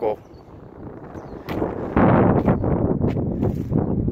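Wind buffeting the microphone. It starts suddenly about halfway through as a loud, low, gusty noise, after a quiet first half.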